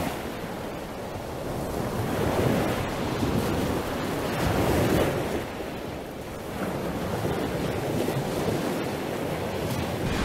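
Sea waves washing and breaking against a rocky shoreline, the rush swelling and easing a few times, with some wind on the microphone.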